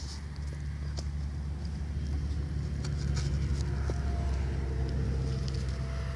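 Low rumble of a motor vehicle passing on a nearby road, building toward the middle and easing off near the end. Faint scattered clicks and crackles come from cardboard catching light from a lighter.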